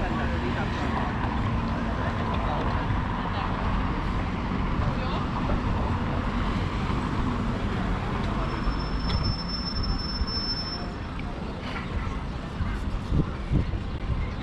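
City street ambience: road traffic running steadily alongside, with scattered voices of passers-by. A thin, high steady tone sounds for about two seconds a little past the middle.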